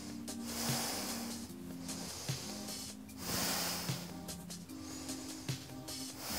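Soft background music of sustained low notes that shift pitch every second or so. Two long breaths rise through it as hissing swells, about a second in and again past the middle, while the wheel pose (a backbend) is held.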